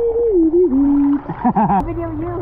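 A child's voice making long, wavering hum-like calls that slide up and down in pitch, with a quick wobbling warble about three-quarters of the way through. It is muffled, as if heard through water at the surface of a swimming pool.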